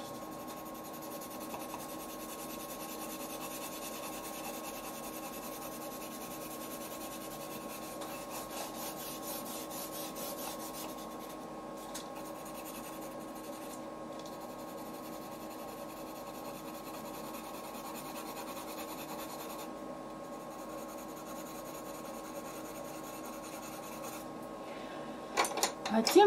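Colored pencil held on its side, rubbing back and forth across drawing paper in continuous shading strokes: a steady scratchy rub.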